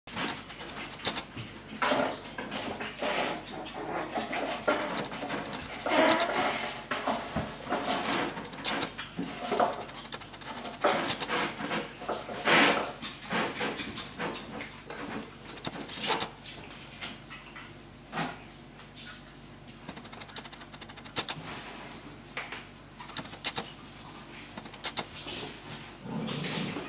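Havanese puppies playing and wrestling on a tile floor: irregular clicking and scrabbling of claws on the tiles and knocks of toys, with a few short puppy yips and growls now and then.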